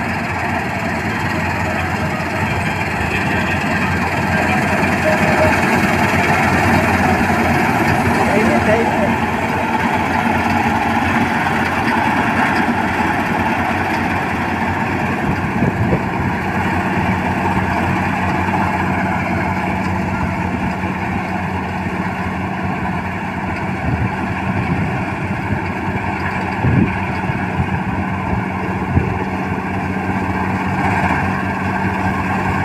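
Kartar combine harvester running steadily while harvesting wheat: a constant engine and threshing-machinery drone with a steady low hum. It passes close by around the middle and then moves away.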